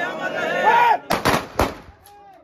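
A guard of honour's ceremonial rifle volley fired in salute: a shouted word of command, then a ragged burst of shots about a second in and one more shot half a second later.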